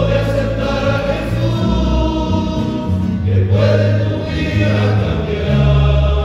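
A men's choir singing a hymn together in parts, with sustained notes and low held bass notes underneath.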